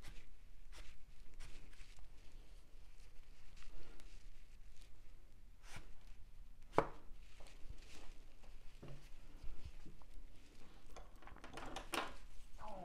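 Irregular soft taps and rustles of a crumpled rag dabbed onto damp watercolour paper to lift paint, with one sharper knock about seven seconds in.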